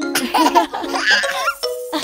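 A baby giggling and laughing for about a second and a half, over gentle children's music with plucked notes.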